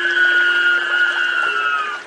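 Ghostly wailing sound effect: one long, high, held lament that sags slightly in pitch near the end, over a faint low steady drone.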